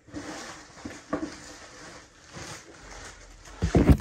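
Handling noise from individually wrapped cookie packs and their cardboard variety box: a steady rustling hiss with a couple of light knocks about a second in and a louder run of knocks near the end, as the spilled packs are gathered up.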